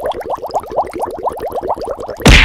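Editing sound effect on the video's soundtrack: a fast, even run of short rising blips, about a dozen a second, which plays as comment screenshots pop onto the screen.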